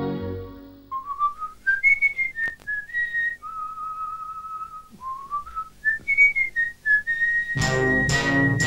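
A person whistling a simple tune: a phrase of notes climbing stepwise to a long held note, then the same climbing phrase again about five seconds in, ending on another long held note. Near the end, orchestral music comes in under the last held note.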